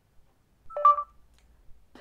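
Android phone's voice-input prompt beep: a short electronic tone of about a third of a second, signalling that Google speech recognition has opened and is listening.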